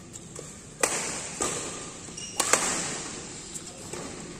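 Badminton rackets hitting a shuttlecock in a rally: three sharp hits, about a second in, half a second later, and again past the middle, each ringing on in the hall's echo. A short high squeak comes just before the third hit.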